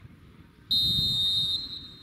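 Referee's whistle: one steady, high blast a little under a second long, starting sharply just under a second in, signalling that the free kick may be taken.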